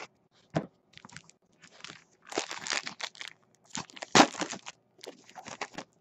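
A foil trading-card pack wrapper being torn open and crinkled, with the cards inside being handled, in irregular crackles and clicks, the loudest about four seconds in.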